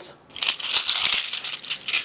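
A bundle of heavy metal coins, used as pattern weights, jingling and clinking together in the hands, starting about half a second in, with a lasting high metallic ring.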